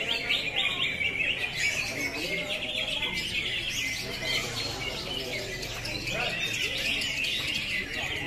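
Many caged greater green leafbirds (cucak hijau) singing at once, a dense, unbroken chatter of fast trills and chirps. People's voices murmur underneath.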